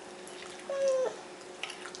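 A young child's brief vocal sound about a second in: one short held tone, about half a second long, that slides slightly down in pitch.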